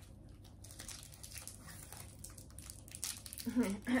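Crinkling of a chocolate bar's wrapper as it is handled and opened: a run of small, irregular crackles and rustles that starts about half a second in and eases off near the end.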